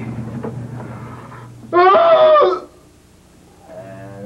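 A person's loud, high-pitched, drawn-out vocal cry lasting just under a second, about two seconds in, its pitch wavering. Before it comes softer breathy laughter, and a steady low hum sits underneath.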